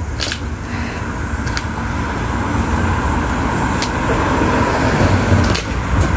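Steady road-traffic noise, slowly growing louder, with a few faint clicks.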